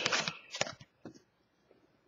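2013-14 Panini Prizm hockey cards rubbing and clicking against each other as a card is flipped over in the hands. There are a few short rustles in the first second, then near silence.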